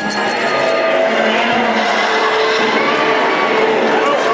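A theatre audience cheering over the film's soundtrack music, a dense, steady mix with a few held musical notes.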